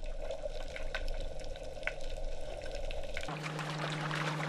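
Water streaming and splashing as a set net packed with mackerel and horse mackerel is hauled up out of the sea. A little past three seconds in, the sound changes suddenly: a steady low engine hum from the boat comes in under brighter splashing.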